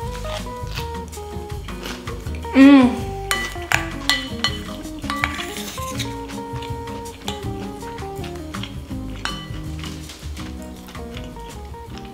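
Background music with a steady bass line. Over it, a wooden spoon scrapes and knocks against a ceramic bowl many times, with a brief "mm" of a person eating about three seconds in.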